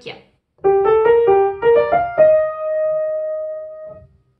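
Piano played with the right hand: a short rising melody of quick notes (G, A, B-flat, G, B-flat, D, F), ending on a held E-flat that rings on and slowly fades.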